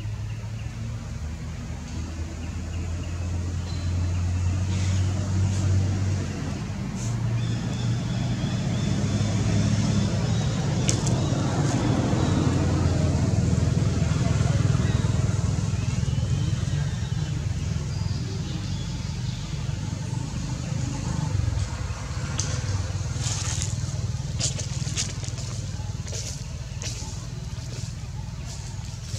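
A low motor rumble swells over several seconds and fades again, with a scatter of sharp clicks near the end.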